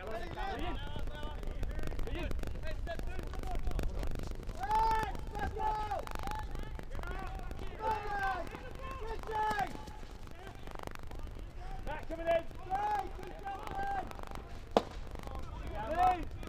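Field hockey players shouting calls to one another across the pitch, voices raised and drawn out, over a low steady outdoor rumble. Near the end there is a single sharp crack of a hockey stick striking the ball.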